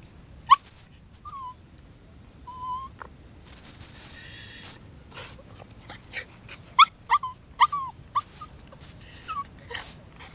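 A Bichon Frise–poodle mix dog whining: a long run of short, high-pitched squeals, some sliding up and some dropping, coming in quick clusters with brief gaps between them.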